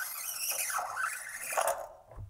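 A new steel guitar string being drawn up through the string-through-body bridge of an electric guitar, making a scraping squeal of metal sliding on metal that wavers in pitch. It stops just before the end.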